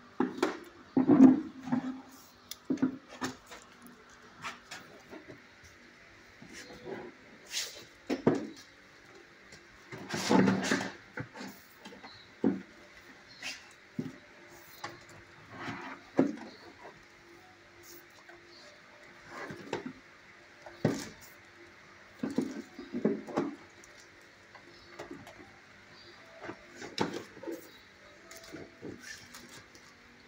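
A dog moving about a kennel: scattered clicks and knocks, with several louder short bursts, the loudest about a second in and around ten seconds in.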